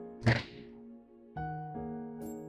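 A single sharp thunk about a quarter second in, over background film music of sustained chords.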